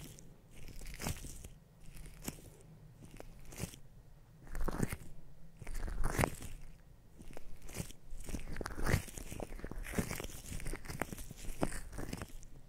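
Close-miked ASMR ear triggers: irregular crunchy, crackling scratches and clicks right at the microphone, coming in uneven strokes and swells.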